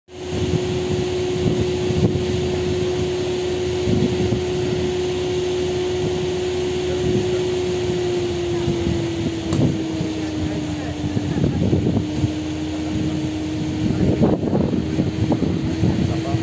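A steady machine hum with one held pitch that settles slightly lower about nine seconds in. It sits over a constant noisy background with irregular low rumbles, and faint voices come in near the end.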